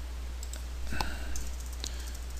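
A few scattered clicks of a computer keyboard and mouse as a line of code is edited, the loudest about a second in, over a steady low hum.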